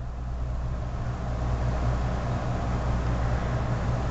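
A steady low machine hum, with a hiss that grows louder over the first second or two and then holds steady.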